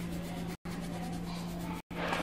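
Coloured pencil scratching on paper in steady shading strokes, over a constant low electrical hum. The sound cuts out completely for an instant twice.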